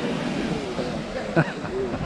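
Strokkur geyser's eruption dying down: a steady rush of falling water and steam, with onlookers' voices over it and one short loud exclamation about two-thirds of the way through.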